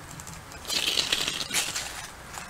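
Crunching and rustling of footsteps on creek-bank gravel and dry leaves for about a second, starting under a second in, over the faint trickle of a shallow creek.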